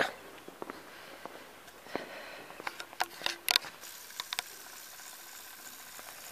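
Quiet room tone with scattered small clicks, taps and rustles from a handheld camera being moved and handled, a few louder knocks about halfway through.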